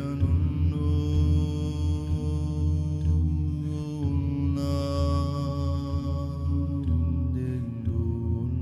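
Layered male voices singing sustained, chant-like drone chords over a deep low hum, the chord shifting about four seconds in and again near seven seconds.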